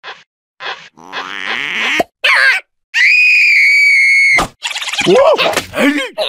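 Cartoon larva characters' wordless vocal sounds: short grunts and squeaks, then one long high scream held steady for about a second and a half, then sliding, wailing gibber.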